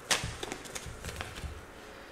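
A deck of tarot cards shuffled by hand: a sharp snap of cards just at the start, then a run of lighter card slaps and taps that stop about a second and a half in.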